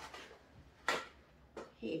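A small cardboard box being opened by hand and its contents pulled out: light paperboard handling noise with one sharp click about a second in.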